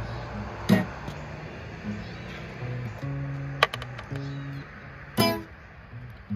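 Acoustic guitar being played: held low chord notes that change every second or so, with a few sharp, louder strums.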